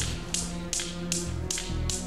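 Steel balls of a Newton's cradle clicking against each other at an even pace, a little under three clicks a second, over background music with sustained tones.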